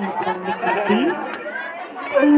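Several people talking at once: mixed crowd chatter among seated guests.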